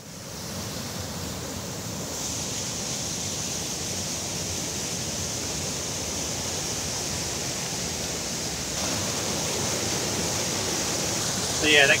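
Steady rush of water from a small stream waterfall, fading in at the start and holding level throughout. A voice speaks briefly right at the end.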